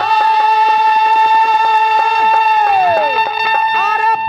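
Live Bhojpuri dugola folk music: a singer holds a long note over steady accompaniment, the voice sliding down near the end, with quick drum strokes throughout.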